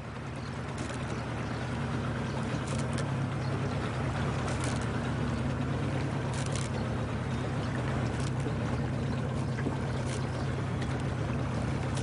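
Motor of a coach launch running steadily with a low hum over water noise. It grows a little louder over the first two seconds, then holds.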